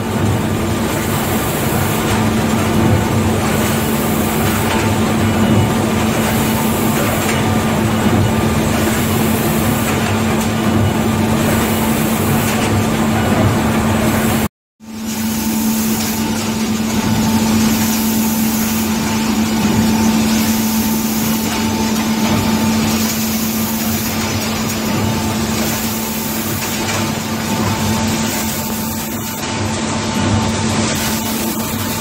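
Kolbus KM 600 perfect binder running in production: a steady mechanical hum and clatter with a regular repeating beat as the machine cycles.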